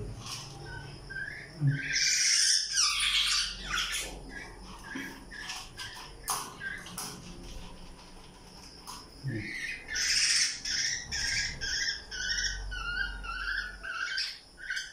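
Fledgling black-naped oriole squawking: a harsh burst about two seconds in, then a run of repeated short calls from about ten seconds on, a hungry chick begging for food.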